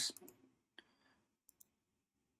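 Faint computer mouse clicks: one a little under a second in, then a quick double click about a second and a half in.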